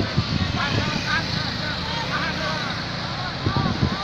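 Road traffic on a hill bend: a vehicle engine passing with a steady low rumble, and people's voices calling out in short snatches over it.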